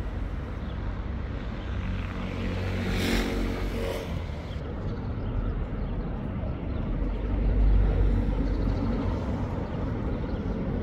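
City street traffic: motor vehicles passing over a steady low rumble, one with a clear engine note and tyre hiss that swells and fades about three to four seconds in, and a louder low rumble near the end.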